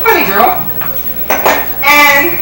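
Dishes and cutlery clinking at the diners' tables, with short stretches of a voice through a microphone and a sharp clink about a second and a half in.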